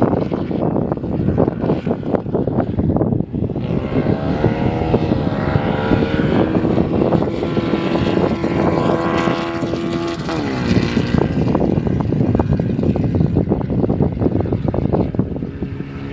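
Open-wheeler race car's engine running hard on the circuit. Its pitch drops about five seconds in, holds steady for several seconds, then dips again near eleven seconds.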